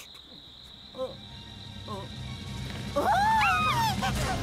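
Wordless cartoon vocal sounds: two short pitched voice blips, then a louder, longer rising-and-falling voice near the end, over a low background hum that builds.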